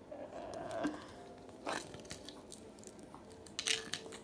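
Umbrella cockatoo biting and crunching on a thin wooden plank, with two sharp cracks about two seconds apart.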